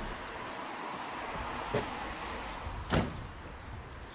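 Car doors of a Mitsubishi Eclipse Spyder convertible: a light latch click a little under two seconds in, then a louder door thud about three seconds in, and another small click near the end as the passenger door is opened, over steady street background noise.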